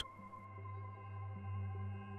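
Quiet ambient background music: a low, steady drone with several held tones above it.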